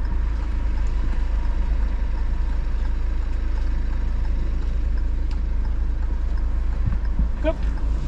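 Car engine idling steadily, heard from inside the cabin, left running with auto stop-start switched off.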